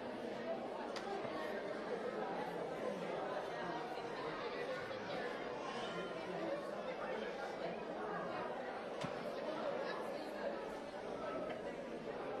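Church congregation talking among themselves, a steady hubbub of many overlapping voices with no single speaker standing out. A couple of light knocks come through, about a second in and again near nine seconds.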